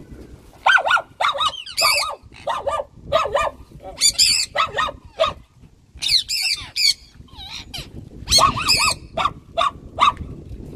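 Pet parrots squawking in an aviary: a run of loud, harsh calls, many in quick double or triple notes, repeated every half second or so with a couple of short pauses.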